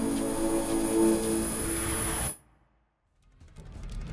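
Station logo sting: a held musical chord with a thin, high steady tone above it, which cuts off suddenly a little over two seconds in. After a second of silence, the next music starts to come in near the end.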